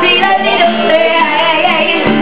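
A woman singing a melodic line live, with acoustic guitar accompaniment underneath.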